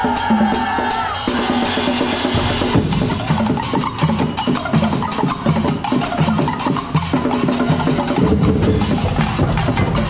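A festival drum and percussion ensemble playing live: fast, dense drum strokes on snare, tenor and bass drums, with mallet-struck keyboard percussion. The deep low drums come in strongly about two and a half seconds in.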